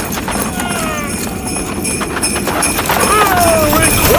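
Sound effect of hooves clip-clopping at a steady pace for Santa's flying reindeer sleigh, with a few high sliding calls near the end.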